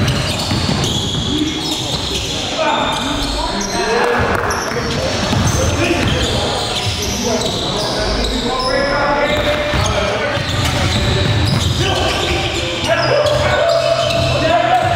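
A basketball bouncing on a hardwood gym floor, heard among players' voices and calls in a large gymnasium.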